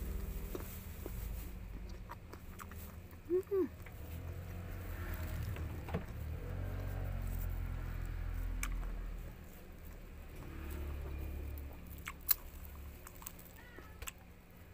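Rambutan being eaten: soft chewing and mouth sounds, with a few sharp clicks and crackles as the hairy rind is torn open by hand, the loudest about 12 seconds in, over a steady low hum. Two brief pitched mouth sounds come about three and a half seconds in.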